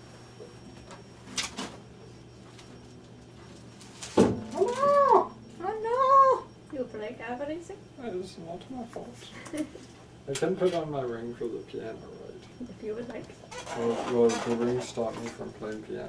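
A sharp knock about four seconds in, then two meow-like calls that rise and fall in pitch, followed by several seconds of wordless voice sounds.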